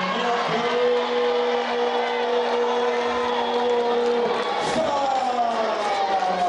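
A ring announcer's voice over the arena PA holds one long drawn-out note for about four seconds, then slides down in pitch, declaring the winner as the boxer's arm is raised. Crowd noise runs underneath.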